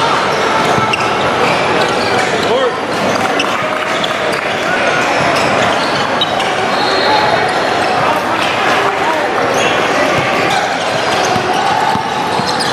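Gym din during a basketball game: basketballs bouncing on a hardwood court amid steady background chatter of players and spectators.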